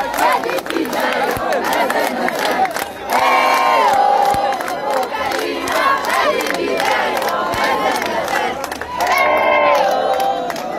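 A large crowd shouting and cheering, many voices at once, swelling into loud massed shouts about three seconds in and again near the end.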